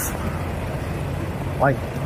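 Steady low drone of idling diesel truck engines, with one short spoken word near the end.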